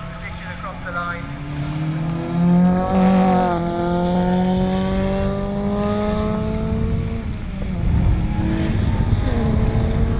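Touring car engines on a wet circuit. One engine rises in pitch and drops sharply about three and a half seconds in, like an upshift, then pulls slowly up again. A rougher engine rumble from the following car comes in near the end.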